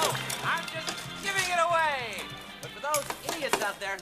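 Television game show soundtrack: music with voices that slide up and down in pitch.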